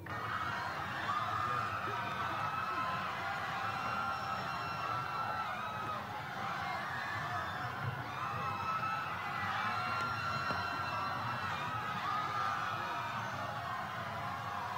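A group of children shouting and cheering together, with many voices overlapping in a steady, continuous din.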